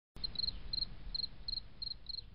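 Cricket chirping: short trills of three or four high-pitched pulses, about three a second, over a faint low rumble.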